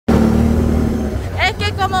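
Motorcycle engine running steadily under way on a dirt track, a low continuous hum. A woman's voice starts over it near the end.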